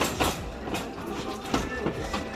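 Plastic storage drawer unit knocking and rattling as it is lifted and handled, with a sharp knock at the very start and a few lighter knocks later.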